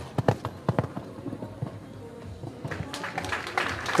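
Horse cantering on a sand arena: a quick run of dull hoofbeats in the first second and a few more near the end, over faint background music.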